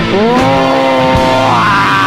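Hardcore punk band playing live, heard off the mixing desk: low steady bass notes and scattered drum hits under a high pitched note that slides up just after the start and again near the end.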